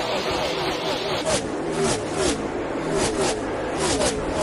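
NASCAR Cup stock cars' V8 engines at racing speed, car after car passing with their engine notes sliding down in pitch as each goes by. About a second in, the sound turns closer and sharper, with one loud pass after another.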